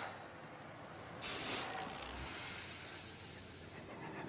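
A hiss of escaping air or gas: a short burst about a second in, then a longer, louder hiss that starts with a dull thud and slowly fades.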